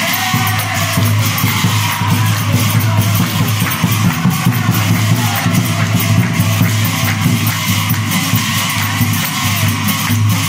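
Live Ojapali devotional music: a group of men singing and clapping with small metal hand cymbals clashing in a fast, continuous rhythm, over a steady low hum.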